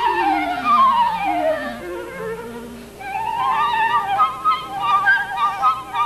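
Flute and clarinet playing a duet: long notes with vibrato slide downward together over the first two seconds, then after a brief lull about three seconds in, higher notes with vibrato take over.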